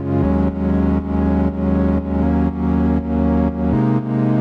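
Synthesizer pad from Ableton's Operator, soloed, holding sustained chords that change three times, its level dipping in an even pulse about twice a second. The chorus effect is turned down, so the pad sounds mono, sitting in the middle of the stereo field.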